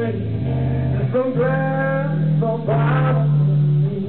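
Live rock song: a male voice sings over guitar and bass, with held bass notes under the melody.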